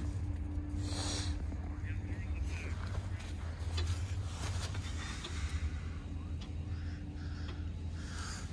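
Pickup truck engine idling: a steady low rumble with a faint hum over it.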